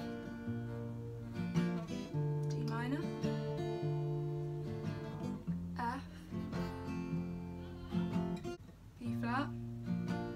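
Acoustic guitar played in a steady strumming pattern through barre chords, starting on B-flat, each chord opened with a picked bass string and then strummed. A short rising squeak of fingers sliding on the wound strings comes at the chord changes, about every three seconds.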